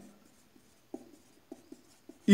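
Marker pen writing on a small white board: a few faint, short strokes, about a second in and near the end.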